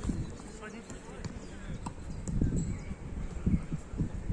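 Sounds of an outdoor small-sided football match: distant players' voices, a few sharp knocks of the ball being kicked, and low rumbling from wind on the microphone.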